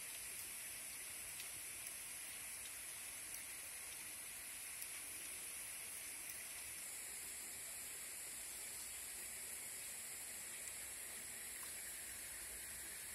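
Faint, steady outdoor ambience: an even high-pitched hiss with a few small clicks.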